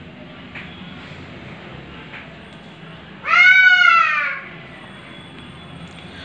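A cat meowing once: a single drawn-out cry a little over a second long, its pitch rising slightly and then falling, about three seconds in.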